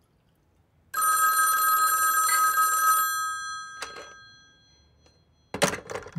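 Telephone bell ringing once for about two seconds, then ringing out.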